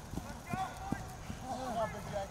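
Footfalls of several football players running on a grass field, a quick irregular patter of thuds, with indistinct shouting voices over them.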